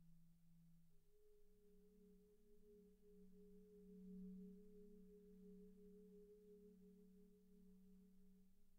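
Very faint sustained ringing tones from percussion music: a low held note, joined about a second in by a note an octave above, swelling slightly around the middle and holding steady.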